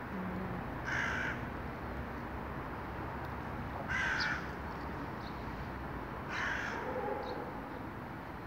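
A bird gives three short, harsh calls, one every two to three seconds, over a steady low background noise.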